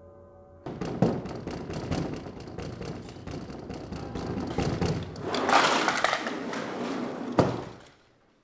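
A fist pounding on a glass patio door, a rapid run of knocks and bangs that grows louder and noisier a little past halfway and ends with one sharp bang near the end before stopping.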